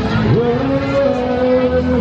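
Small electric bike motor whining: it spins up quickly in pitch, then holds a steady tone for about a second and a half before cutting out.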